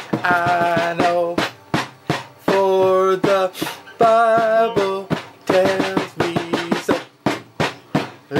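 Toy electric guitar playing a simple electronic tune: steady held notes stepping from pitch to pitch over an even clicking drum beat, stopping and starting in short phrases.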